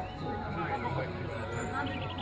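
Indistinct shouting and calling from several voices across an open football pitch, overlapping and without clear words.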